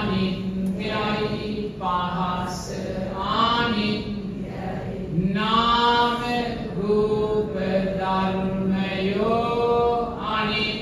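Buddhist chanting by a voice in long held, sliding notes, phrase after phrase with short breaks between.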